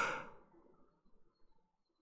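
A short breath at the very start, then near silence: room tone.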